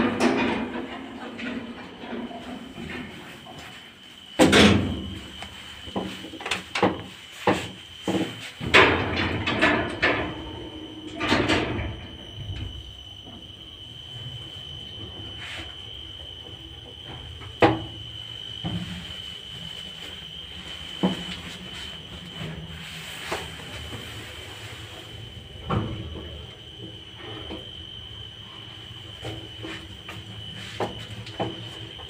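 KMZ passenger lift (2007): its automatic sliding doors open and then shut with a run of knocks and bangs over the first twelve seconds or so. The cab then runs with a steady low hum and a few single clicks, over a constant high whine.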